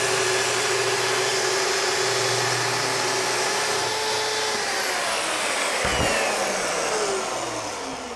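Festool track saw cutting through a wood panel along its guide rail, with a dust extractor drawing through the attached hose: a steady motor whine, then about halfway through the saw is switched off and spins down, its pitch falling over the next few seconds.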